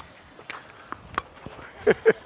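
A few short, sharp knocks of tennis play on a hard court, a ball striking a racket and bouncing, spaced about half a second apart. A man starts to laugh near the end.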